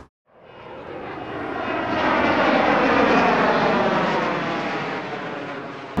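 Airplane passing overhead, its engine noise swelling to loudest about three seconds in, then fading away.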